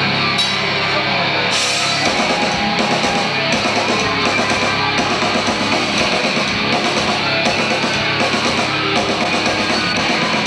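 Heavy metal band playing live: distorted electric guitars, bass and drum kit with regular cymbal crashes. About two seconds in, held low notes give way to a choppy, driving riff.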